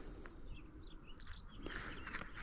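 Faint, scattered bird chirps, short high notes over a quiet outdoor background, with a couple of soft clicks.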